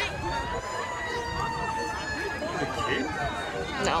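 Emergency siren wailing: one long tone that rises briefly, then slowly falls in pitch.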